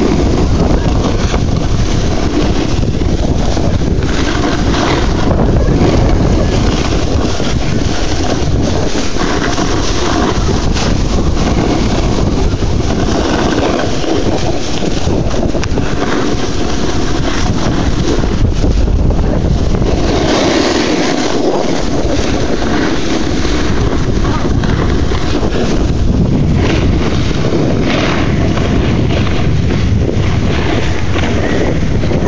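Loud, steady wind rush buffeting a handheld camera's microphone as the filmer rides down a ski slope at speed, mixed with the hiss of sliding over packed snow.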